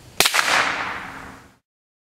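A single shot from a homemade caseless .22 rifle (the Plink-King), firing a swaged No. 4 buckshot ball on its full 1.1-grain smokeless powder charge, good for about 1,450 feet per second. A sharp crack comes about a fifth of a second in, and its echo rings on and dies away over about a second.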